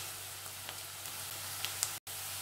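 Chopped onion frying in ghee in a nonstick pan: a steady sizzle with a few faint crackles.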